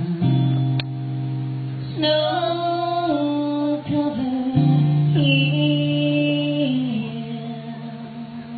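Live band music: guitar and a woman singing, with long held notes and chord changes. It dies down near the end.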